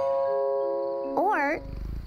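A held chord of chiming mallet-like music notes, then about a second in a cartoon cat meows once with a wavering, rising-and-falling pitch, followed near the end by a low purr.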